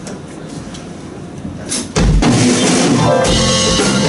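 A live pop band with drum kit, guitars, keyboard, bass and saxophone comes in loudly all at once about halfway through, drums and bass drum leading into the song; before that only a few faint taps.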